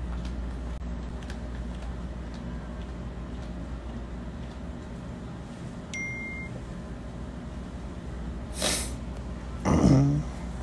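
Steady low hum of indoor background noise picked up by a phone microphone. Two short sounds break in near the end, the second louder.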